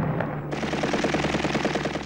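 Automatic rifle fire: a long, rapid burst of about a dozen shots a second, beginning about half a second in as the noise of a heavy blast dies away.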